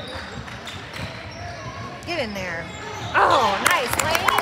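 Basketball game in a large gym: a basketball bouncing on the hardwood floor amid shouting from players and spectators, the shouts getting louder about three seconds in.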